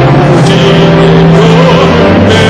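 Live rock band music played loudly, with a held note that wavers in pitch over sustained chords.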